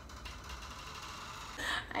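Faint, steady crackly rustle of fingers pressing into and fluffing a short curly wig.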